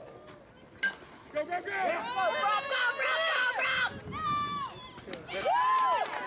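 Spectators shouting and cheering at a youth baseball game, many voices at once, starting about a second and a half in and swelling again near the end. Just before the shouting there is a single sharp knock as the pitch reaches the plate.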